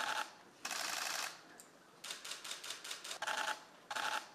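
Camera shutters firing in rapid continuous bursts, about five short runs of fast clicking with brief pauses between them.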